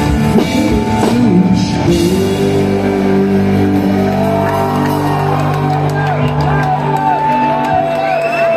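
Live band playing loud rock music with drums and guitar. About two seconds in the drumming stops and a long chord is held, with a voice calling out over it in the second half.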